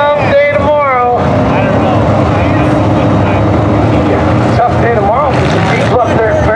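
Several IMCA sport mod dirt-track racecars running their V8 engines at race speed. Engine pitch rises and falls as they lift and get back on the throttle through the turn.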